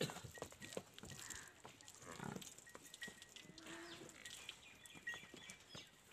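A water buffalo gives a short, low call about midway, amid faint scuffs and clicks.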